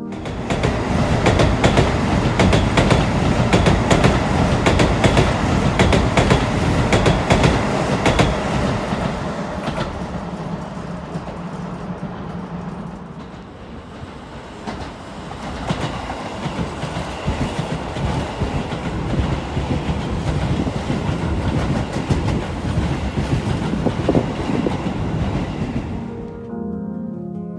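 Keisei electric commuter trains at a station platform. For the first nine seconds or so, train running noise is loud, with rapid clicks of the wheels over the rail joints. After a lull, a train's running noise rises again as it comes in along the platform.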